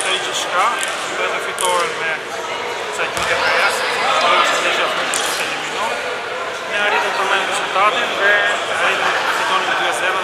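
A man speaking over the noise of a large sports hall, with basketballs bouncing on the court in the background and scattered knocks.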